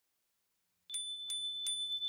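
A bicycle bell rung three times in quick succession, starting about a second in, its high ding ringing on between strikes.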